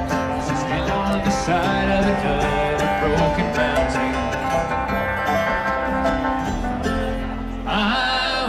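Live bluegrass band playing an instrumental stretch of a song: banjo, guitar and mandolin picking over upright bass. The music dips briefly near the end, then fresh notes come in.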